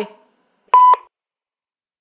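Answering machine beep: one short, steady, high beep about a quarter second long, with a click at its start and end, about two-thirds of a second in. It marks the end of a recorded message.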